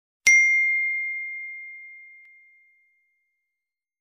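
A single bell ding, struck once about a quarter second in, a high-pitched ring that fades away over about two and a half seconds: the notification-bell sound effect of a subscribe-button animation.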